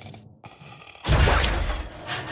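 A sudden loud crash about a second in, dying away within a second: a cartoon crash sound effect for the robot falling to the floor.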